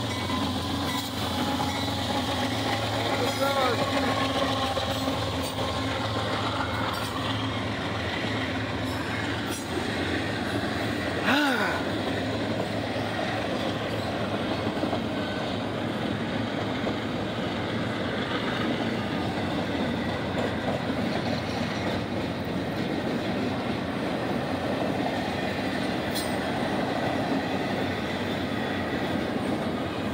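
A CSX intermodal freight train passing close by. First the lead diesel locomotive's engine hum, then the steady rumble of double-stack container cars rolling past on the rails, with one brief loud sound about eleven seconds in.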